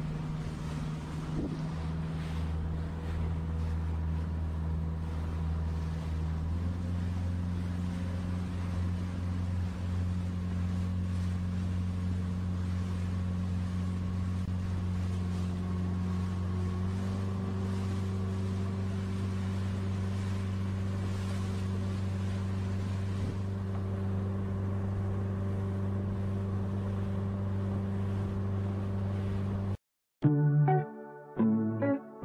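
Outboard motor of a small aluminum jon boat running steadily under way, with wind and water noise over it. Its pitch steps up slightly about six seconds in and shifts again a little after halfway.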